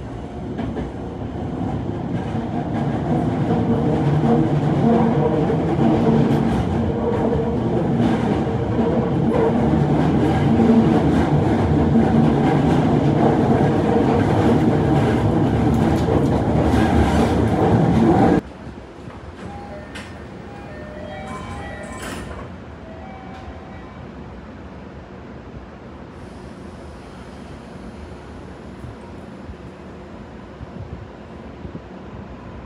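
Toei Mita Line 6500 series electric train pulling out of a station, heard from inside the car: the running noise of motors and wheels on rail builds over the first few seconds to a loud, steady rumble with rail clatter. About 18 seconds in it cuts off suddenly to a much quieter steady hum, with a few short electronic tones soon after.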